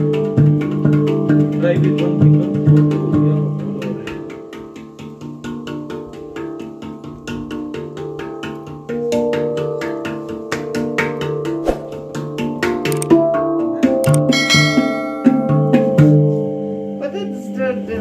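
A handpan (hang drum) played with the hands: a run of struck steel notes that ring on and overlap into a melody. The playing softens a few seconds in and grows louder again about halfway through.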